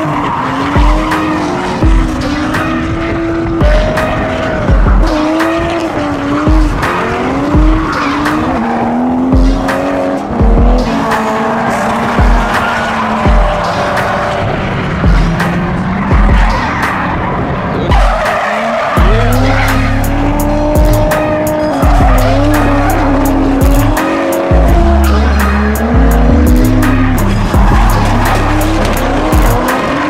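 Drift cars' engines revving up and down with tyres squealing, mixed with electronic music that has a steady kick drum about every 0.8 s. A heavy bass line joins the music about two-thirds of the way through.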